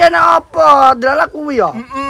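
Men's voices talking, with one drawn-out vocal sound that falls in pitch about one and a half seconds in.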